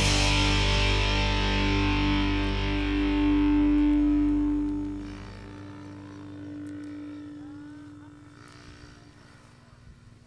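Final sustained distorted electric guitar chord of a rock soundtrack, ringing out steadily and fading away over about five seconds. After it there is only a faint, quiet background.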